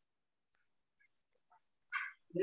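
Near silence, broken by a few faint, brief fragments of a voice and a short louder burst of voice at the very end.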